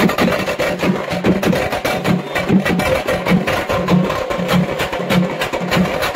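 Live procession drum band playing fast, dense stick drumming, with a repeating low drum beat under the rapid strokes.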